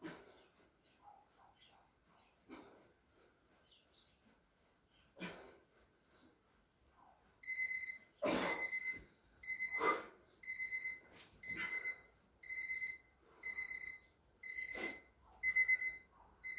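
Electronic timer beeping a steady high tone, about ten evenly spaced beeps roughly once a second starting about halfway through, marking the end of a 30-second exercise interval. Before it, faint rustles and a few soft thuds of body movement on a blanket-covered floor.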